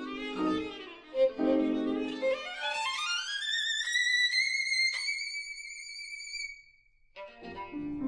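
Background music on bowed strings led by a violin. After a few lower notes it slides upward into a high, long-held note with vibrato that fades out. After a brief gap, fuller low string notes come back in near the end.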